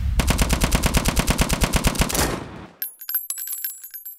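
A rapid, even burst of automatic gunfire lasting a little over two seconds, then fading. It is followed by scattered light clicks and thin high ringing tones.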